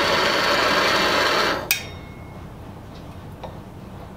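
Hand-held propane torch burning with a steady hiss, cut off suddenly with a click about one and a half seconds in as the flame is shut off.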